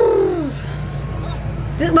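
A woman's drawn-out laugh, a single voice falling in pitch, that fades out about half a second in. A low steady background hum remains after it, and speech starts at the very end.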